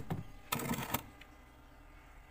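A short burst of clattering as ice cream moulds are set into a freezer, loudest about half a second in, then fading to faint room noise.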